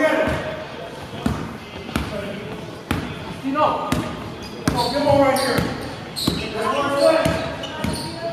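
A basketball dribbled on a hardwood gym floor, its bounces coming roughly once a second and echoing in the large hall, with short high sneaker squeaks in between.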